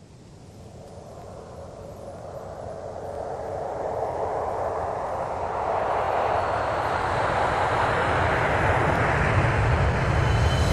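A steady rushing noise with a low rumble underneath, growing steadily louder and brighter over about ten seconds.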